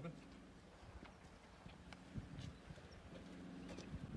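Very quiet outdoor ambience with faint, distant voices and a few soft ticks.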